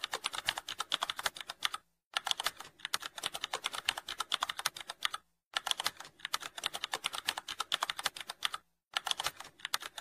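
Computer keyboard typing sound effect: rapid key clicks in three long runs, broken by short pauses about two seconds, five seconds and nearly nine seconds in.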